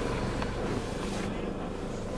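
Hummer H3 engine idling, heard from inside the cabin as a steady low hum.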